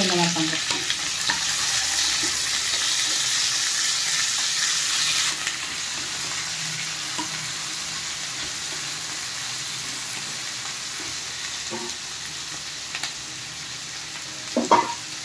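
Paneer cubes, green capsicum and onion sizzling in a little oil in a nonstick pan while being stirred with a wooden spatula. It is a quick sauté to keep the capsicum crunchy. The sizzle is louder for the first five seconds or so, then settles lower.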